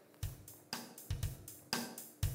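A simple drum-kit beat: bass drum and snare alternating about twice a second under a hi-hat, a plain funk beat with no syncopation that is too predictable and not particularly danceable.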